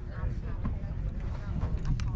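Wind buffeting the microphone in an uneven low rumble, with faint voices talking in the background.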